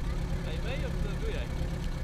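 A 1986 VW T3 Syncro's 1.9-litre water-cooled flat-four (Wasserboxer) engine idling steadily, with a voice or two briefly heard over it about half a second in.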